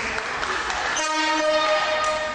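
Sports hall timing horn sounding one steady, buzzy tone for about a second, starting about halfway through, over the echoing hall noise.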